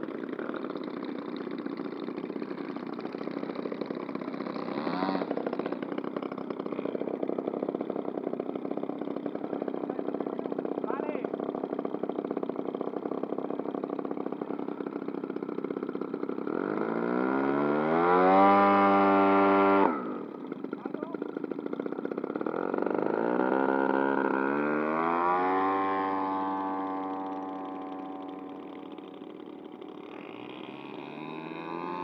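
Piston engines of large radio-controlled scale model aircraft running on the ground. About two-thirds through, one is run up to a loud, high-pitched full throttle that cuts off suddenly after about two seconds; then another revs up, its pitch climbing, and fades as the model rolls away down the strip.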